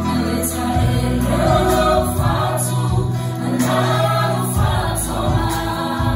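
A group of voices singing a gospel song over amplified accompaniment with sustained bass notes and a light beat.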